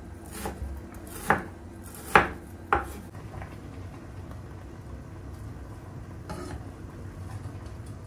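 Chef's knife cutting raw chicken breast on a wooden cutting board, the blade knocking sharply against the board three times between about one and three seconds in.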